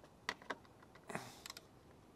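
A few light metallic clicks and a brief scrape as a socket and ratchet are fitted onto a bolt of the motorcycle's top-box mounting rack.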